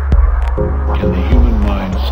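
Minimal electronic house track: a deep, pulsing bass line with clicking percussion, and a pitched synth sound that slides slightly downward in the second half.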